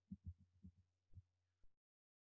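Near silence: a few faint, short low thuds over a faint low hum, then dead silence near the end.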